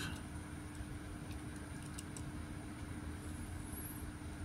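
Quiet, steady room hum with a faint constant tone underneath, and a couple of faint ticks.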